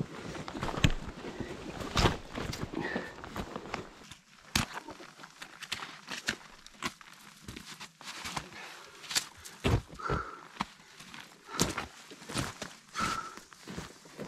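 Footsteps of a hiker in crampons on snowy rock: irregular sharp clicks and scrapes of the metal spikes against stone and snow.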